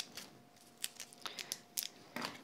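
Faint, scattered clicks and rustles of hands handling a roll of craft tape, with about half a dozen short ticks spread through.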